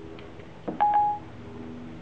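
iPhone 4S Siri tone: a short single beep about three-quarters of a second in, the signal that Siri has stopped listening and is handling the spoken request. A faint steady hum runs underneath.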